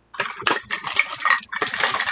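Plastic surprise-ball capsule halves and packaging being handled, a dense rustling with quick clacks and clicks, in two stretches with a short break around the middle.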